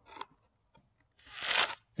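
A plastic snuffer bottle drawing water and fine gold up out of a gold pan: a faint click, then a short hissing slurp about a second and a half in as the bottle sucks in.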